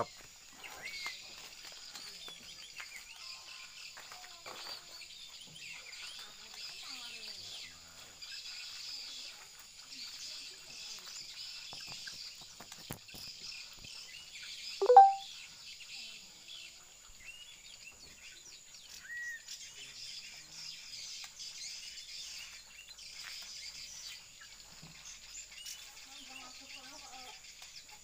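Caged oriental magpie-robin and white-rumped shama singing, a busy run of high chirps and whistles over a steady high insect whine. One short, loud, lower call comes about halfway through.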